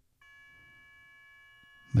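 The Mobilinkd TNC3's transmit test tone set to 'Both': the 1200 Hz and 2200 Hz APRS modem tones sent together through a Yaesu FT-65R and heard over a second radio's speaker as a steady chord of several tones. It starts a moment in, and it shows the TNC is keying the radio and passing audio correctly.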